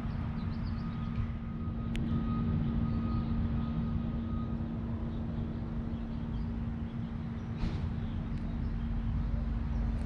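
A motor running steadily, making a constant low hum over a low rumble, with a single sharp click about two seconds in.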